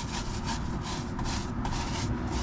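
Stiff-bristled tire brush scrubbing a wet truck tire sidewall in quick, even back-and-forth strokes.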